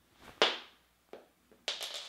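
A short, forceful vocal grunt as a small button is flung away, rising suddenly and fading over about half a second. A fainter sharp tap follows about a second in, and a hissing breath comes near the end.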